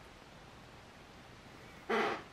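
Faint room tone with no distinct sound, then a brief bit of a man's voice just before the end.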